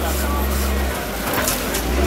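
Indistinct background voices over a steady low rumble, with a brief hiss about one and a half seconds in.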